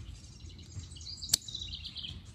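Scissors snipping through a tomato vine stem: one sharp snip a little past halfway, with birds chirping in the background.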